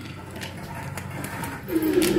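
Steady low hum and hiss of the inside of an elevator car, with a couple of faint clicks; a voice begins near the end.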